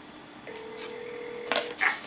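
Red toy rotary telephone playing a steady electronic tone from about half a second in, broken by a sharp click about a second and a half in. Its recorded voice message starts near the end.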